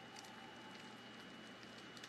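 Near silence: only a faint hiss.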